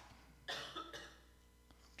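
A single faint cough from a person, starting suddenly about half a second in and dying away within half a second.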